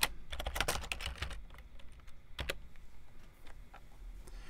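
Typing on a computer keyboard: a quick run of keystrokes in the first second and a half, then a few scattered key presses.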